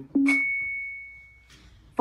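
A single electronic ding from Google Assistant's Mad Libs game, played through the device's speaker: one high chime that starts sharply and fades out over about a second.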